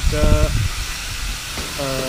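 Wind noise on a GoPro Hero 4's microphone while riding a bicycle: a steady low rumble and hiss under a man's speech.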